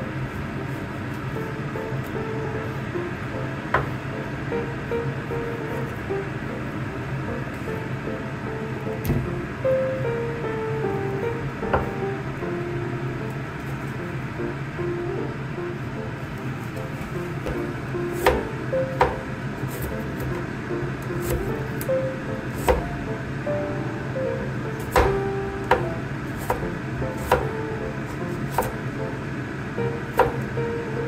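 Background music, with a Chinese cleaver knocking on a wooden chopping board as pork is sliced: a few scattered sharp knocks in the first half, then frequent knocks about a second apart from about 18 seconds in.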